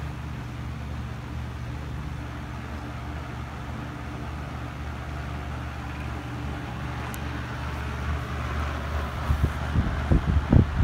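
Vintage Super Electric metal box fan running steadily: a constant rush of air over a low electric-motor hum. The motor has a slight bearing rattle.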